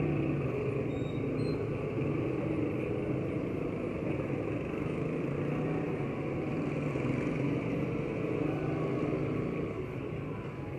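Motorcycles and a car passing close by in street traffic, their small engines giving a steady hum over road noise.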